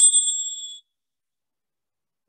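A small metal bell struck once: a bright, high ring with a sudden start that fades away within about a second.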